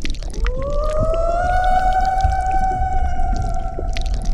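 Film soundtrack: one long eerie tone swoops up in pitch, then holds steady to the end, over a low rumble and scattered clicks.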